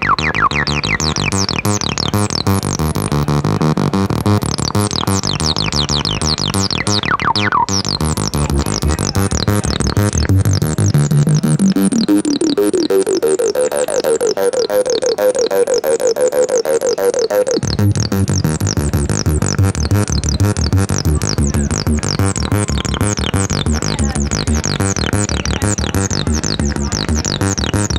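Studio Electronics Boomstar SE80 analog synthesizer, with its CS-80-style dual resonant filter driven hard, playing a fast repeating pattern of notes with quick falling high chirps. About ten seconds in, a resonant filter sweep climbs from the bass into the mid-range while the low end drops away, and the bass cuts back in abruptly some seven seconds later.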